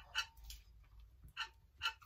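A few faint, short wet smacks and clicks of a person chewing a mouthful of buttered bread.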